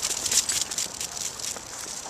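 Rapid scuffing and clicking patter of movement on a concrete path, fading somewhat toward the end.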